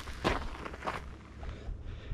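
A few short crunching scuffs of footsteps shifting on coarse gravel in the first second, then quieter.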